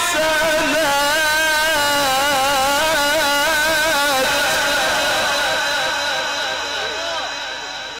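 A male Quran reciter's mujawwad recitation: a single long, drawn-out melismatic phrase with rapid ornamental wavering in the voice, stepping down in pitch about four seconds in and fading away near the end.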